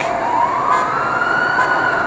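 A siren wailing: one slow rise in pitch that eases slightly near the end.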